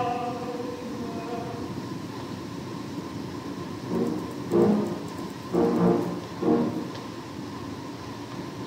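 A tenor's held sung note with piano dies away in the first second and a half, leaving steady recording hiss. About halfway through, three short pitched notes sound roughly a second apart.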